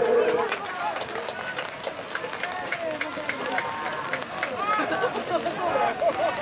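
Several voices shouting short calls across a football pitch, overlapping. A long chanted note from supporters tails off at the very start.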